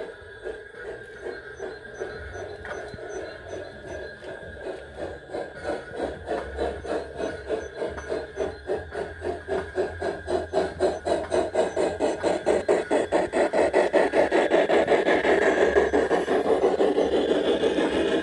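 LGB G-scale model BR 95 steam locomotive running with its train, a steady rhythm of about four beats a second that grows louder as it approaches and passes close by.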